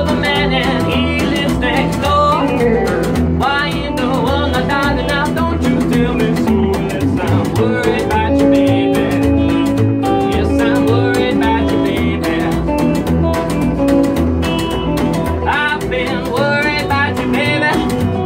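Live rockabilly band: an acoustic guitar is strummed over an electric guitar and a plucked upright double bass keeping a steady beat. A male voice sings near the start and again near the end, with an instrumental stretch in between.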